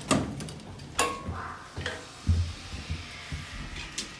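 A few sharp clicks and knocks, then a low thump a little over two seconds in, with a brief faint tone about a second in.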